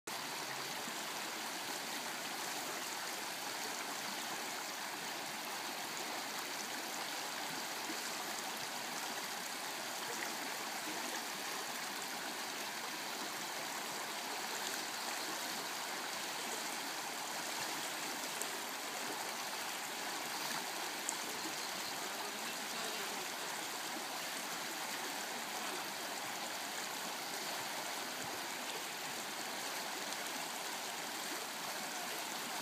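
Shallow, rocky river flowing over stones: a steady rush of running water.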